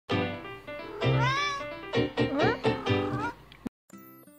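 Bengal cat meowing repeatedly, a string of calls that glide up and down in pitch, with music underneath. The sound cuts off abruptly near the end.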